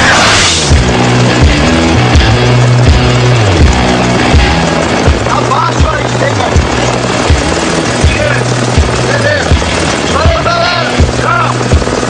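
Background music with a steady beat and held bass notes, opening with a short whoosh.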